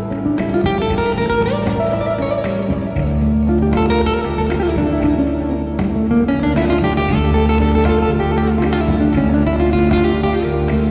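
Flamenco-style guitar music: plucked guitar notes and runs over a steady accompaniment, with deeper sustained bass notes coming in about three seconds in.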